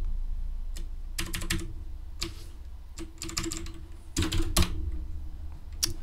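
Computer keyboard being typed on in short, irregular bursts of keystrokes, with a steady low hum underneath.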